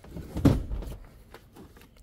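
Toyota Alphard mid-row seat sliding along its floor rails after its release latch is pulled: a low rumble about half a second in that fades within a second, then a few faint clicks.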